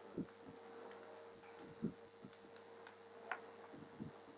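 Chalk knocking and tapping on a blackboard while writing: a few faint, irregular knocks and one sharper click near the end, over a steady hum.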